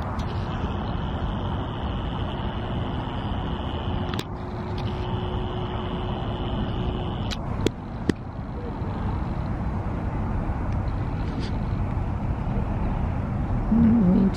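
Steady low outdoor rumble, with a faint steady hum through the first half that stops a little after seven seconds, and a few sharp clicks about four seconds in and twice near eight seconds.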